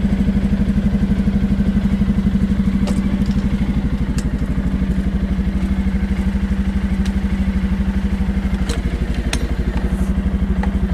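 Arctic Cat 700 EFI ATV's Suzuki-built single-cylinder engine idling with a steady, even pulse, with a few light clicks from handling the plastic battery box. The failing voltage regulator is overcharging the battery at this idle, which the dash shows as a VOLT warning.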